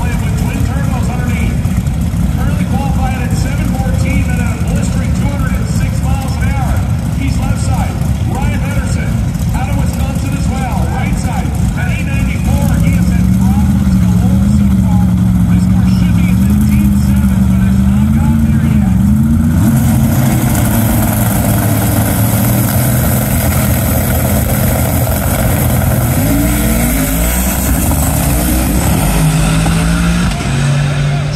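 Manual-transmission drag cars' engines running, with people talking. About 12 seconds in, an engine holds a steady, slightly wavering rev. About 20 seconds in, a louder, hissier engine sound takes over, with rising revs near the end, as cars make a pass.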